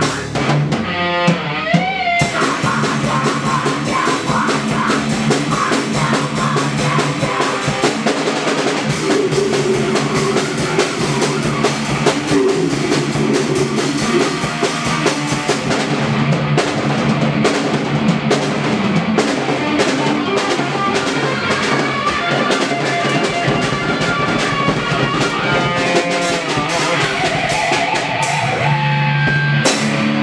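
A live rock band plays loud: an electric guitar over a drum kit, with fast, steady drum and cymbal hits.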